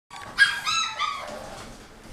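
Pointer-mix puppies yelping and whining, several high-pitched calls overlapping in the first second and a half, the first the loudest: puppies eager to be let out to their dinner.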